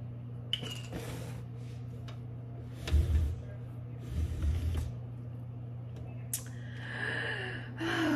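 A woman drinking in gulps from a plastic bottle: low swallowing thumps around the middle, then a breathy exhale near the end.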